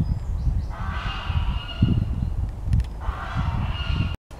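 A goose honking twice, each call lasting about a second, over a low rumble.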